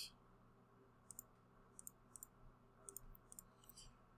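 Faint computer mouse clicks, several of them in quick pairs, over near silence.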